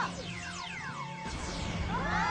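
Cartoon sound effects: several quick falling whistle-like glides in the first second, then a low rumbling whoosh building toward the end, over background music.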